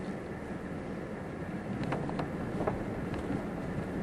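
Truck driving slowly along a rough dirt forest track, heard from inside the cab: a steady rumble of engine and tyres, with a few light knocks and rattles about halfway through.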